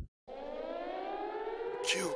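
A siren-like wail, one pitched tone with overtones, rising slowly in pitch. It starts just after a loud low rumble cuts off suddenly.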